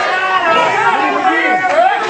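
Several people talking and calling out over one another, echoing in a hall.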